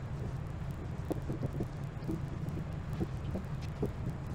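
Dry-erase marker squeaking on a whiteboard in short quick strokes as a list is written, over a steady low hum.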